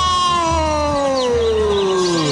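Background music with one long falling pitch glide, sliding steadily from high to low over about two seconds over a pulsing low beat, like a pitch-down transition effect.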